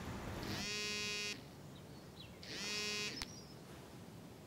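Smartphone in a belt-clip holster vibrating on an incoming call: two buzzes, each under a second, about two seconds apart, with a short click just after the second.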